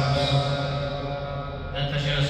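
Slow devotional music with long, held notes; a new note comes in near the end.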